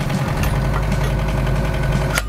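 Yanmar SV05 mini excavator's diesel engine idling steadily with a low, even hum.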